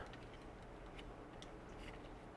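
Quiet room tone with a few faint, irregular ticks.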